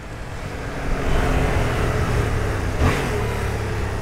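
Yamaha MT-07's parallel-twin engine running on its stock exhaust under way, mixed with wind and road noise. It grows louder about a second in as the bike pulls, then holds steady.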